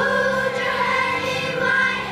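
A children's choir singing an English song together, a new phrase starting loudly right at the start with long held notes.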